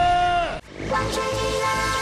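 Two long, steady horn-like tones. The first cuts off abruptly about half a second in. After a brief break, the second, a chord of several pitches, holds for about a second and a half.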